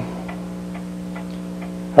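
Pendulum wall clock ticking steadily, over a steady electrical hum.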